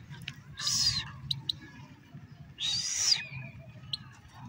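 Goldfinch giving two harsh calls, each about half a second long and about two seconds apart, with a few short sharp ticks between them.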